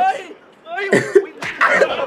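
Men's voices laughing, with a short harsh cough-like burst about a second in and rough voice sounds after it.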